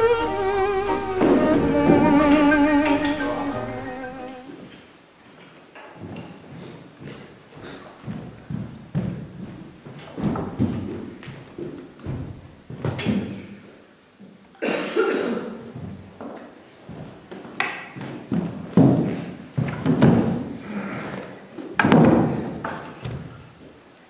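A sustained melody with a wavering vibrato fades out about four seconds in. After that come irregular, scattered thuds and knocks, the sounds of people moving around a set dining table.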